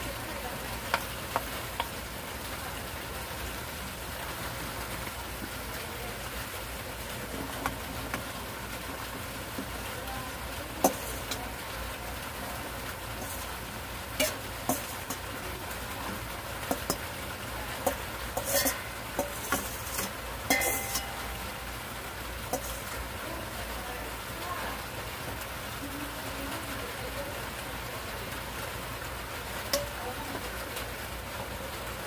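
Noodles and vegetables sizzling in a frying pan while being stirred with a wooden spatula, with scattered clicks and knocks against the pan. Partway through, a cluster of louder knocks comes as cubed bottle gourd (upo) is tipped into the pan.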